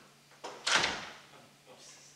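A single short, noisy thud about half a second in, dying away within half a second, over a faint steady low hum.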